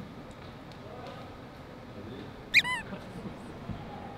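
A single short, high-pitched squeak about two and a half seconds in, over quiet room tone.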